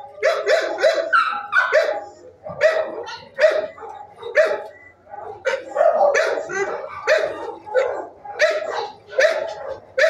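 Dogs barking in shelter kennels, a steady run of sharp barks at about two a second.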